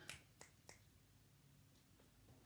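Near silence: room tone, with three faint clicks in the first second.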